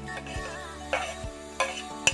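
Metal spoon scraping and clinking against a plate as chopped ginger and chillies are pushed off it into a wok, with a few sharp clinks about a second in and near the end. Oil sizzles in the hot wok underneath.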